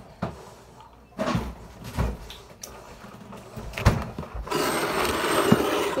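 Items handled on a table, with a few sharp knocks in the first four seconds. Near the end comes a plastic bag crinkling steadily for about a second and a half.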